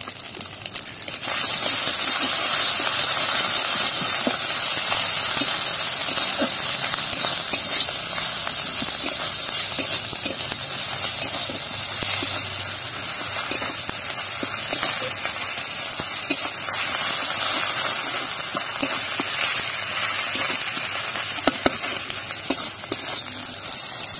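Hot oil sizzling loudly in a kadai as browned sliced onions fry, starting abruptly about a second in and holding steady. A metal spatula scrapes and taps against the pan as they are stirred.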